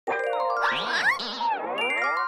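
A short intro jingle of chiming, bell-like tones ringing one after another, with a few sliding whistle-like swoops up and down in the middle.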